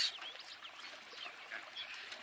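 Faint outdoor ambience with a few short, faint bird chirps.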